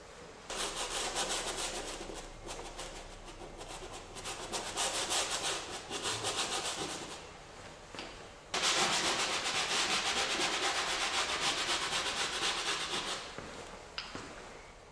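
A stiff bristle brush scrubbing oil paint into a stretched canvas with rapid back-and-forth strokes, a dry, scratchy rubbing. It comes in uneven bouts at first, pauses briefly about eight seconds in, then runs louder and steadily until just before the end.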